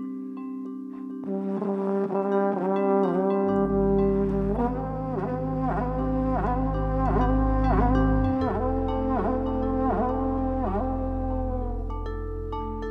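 Live jazz quartet: a trombone leads with a line of notes that swoop down and back about twice a second, over sustained vibraphone tones. Long, low double bass notes enter about three and a half seconds in.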